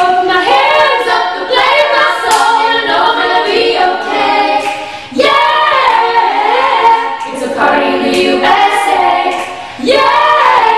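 Group of young women and a young man singing a pop song a cappella in several voices, with no instruments, pausing briefly about five seconds in and again near the end.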